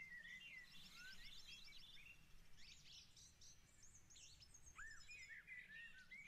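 Faint birdsong from a nature-sounds background: several birds chirping and whistling, with quick trills of repeated high notes, over a low steady hiss.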